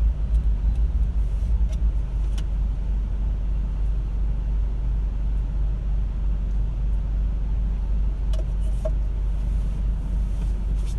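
Low steady rumble inside a car's cabin with the engine idling while stopped in traffic, heavier and more uneven for the first two seconds, with a few faint clicks.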